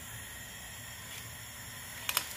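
Soft, steady hiss of a pot of soup cooking on the stove.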